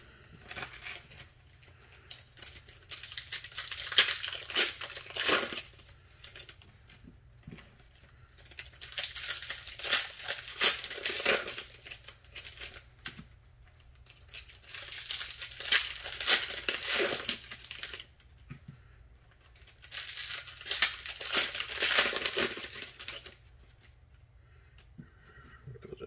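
Bowman Platinum trading-card pack wrappers crinkling and tearing as the packs are ripped open one after another, in four bursts of a few seconds each with quiet gaps between.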